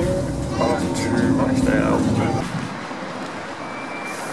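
Low rumble of a moving train carriage with voices over it, which stops abruptly about two and a half seconds in, leaving a quieter, even background of street noise.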